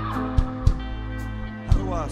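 Live band music: electric guitar holding sustained notes over drum hits, with a wavering, bending pitch near the end.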